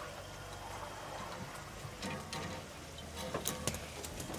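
Open safari Land Rover's engine running with a steady low hum as the vehicle creeps along a dirt track, with a few sharp clicks or knocks in the second half.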